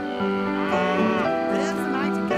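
A cow mooing in two drawn-out calls over background music.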